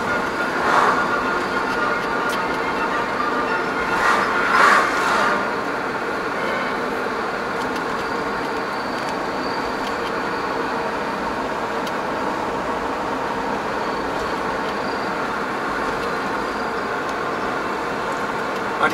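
Steady road and engine noise heard inside a moving car. Oncoming cars pass with brief swells about a second in and again about four seconds in.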